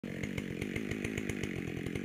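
Husqvarna 572 XP two-stroke chainsaw with a modified muffler idling steadily, its exhaust beating in an even, regular pulse.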